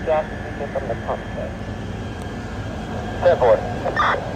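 Steady low rumble of fire apparatus engines running at a fire scene, with short snatches of voices about a second in and again near the end.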